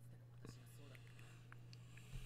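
Near silence: room tone with a steady low hum and a few faint, indistinct ticks.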